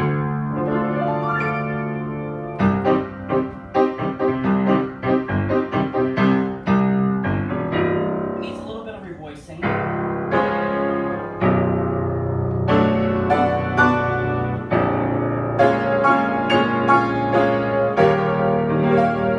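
A 1920s Bösendorfer Model 214 semi-concert grand piano played with both hands: full chords and runs of notes that ring on into each other. The playing softens for a moment about eight seconds in, then comes back with louder chords.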